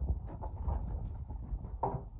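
Boston terrier snuffling and snorting close by as it walks on carpet, in a run of rough, irregular breaths, with one sharper snort near the end.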